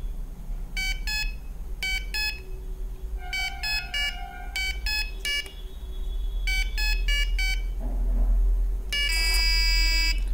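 Small electronic buzzer of an Arduino LED memory game sounding short beeps of a few different pitches as the LED sequence plays and the buttons are pressed. Near the end it gives a longer, harsher buzz for a wrong button press, signalling that the game is lost.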